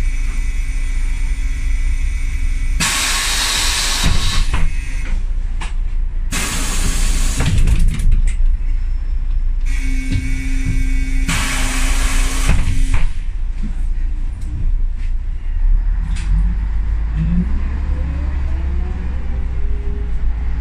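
Ikarus 280 articulated bus heard from inside, its diesel engine idling with a steady low rumble, broken by three long hisses of compressed air from the bus's air system. Near the end the bus pulls away: the rumble grows and a rising whine from its ZF gearbox comes in.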